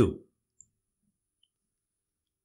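The last word of a voice trails off. About half a second in comes a single faint computer-mouse click, then near silence.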